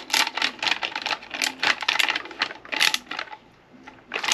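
Ratchet driver with a half-inch socket clicking as it tightens the shotgun's grip bolt, about four clicks a second, stopping about three seconds in.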